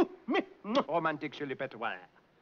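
A man's voice rattling off mock-French double-talk, nonsense syllables in a rapid stream with swooping, exaggerated rises and falls in pitch. It breaks off just before the end.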